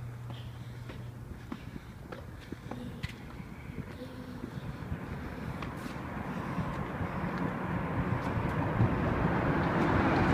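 Road traffic in a concrete road underpass: a car's tyre and engine noise growing steadily louder over the second half as it approaches. A few light ticks sound throughout.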